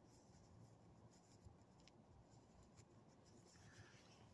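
Near silence: faint low background rumble with a few soft scratches and clicks.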